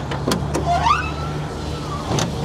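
Door latch of a 1953 Pontiac Chieftain clicking open, then the old door hinges squeaking as the door swings open: a rising squeak that holds on one high note for about a second and then falls away.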